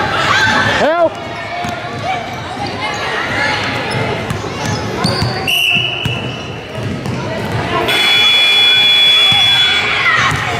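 Indoor youth basketball game sounds: voices across the gym and a basketball dribbling on the hardwood floor, with a short squeal about a second in. About halfway through, the referee blows a short whistle blast to call a foul, and a steadier high tone sounds near the end.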